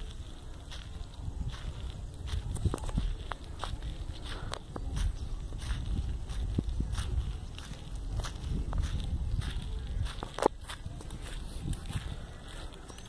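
Footsteps scuffing on sandy dirt with irregular clicks, over a steady low wind rumble on the phone's microphone. One sharper click about ten and a half seconds in is the loudest moment.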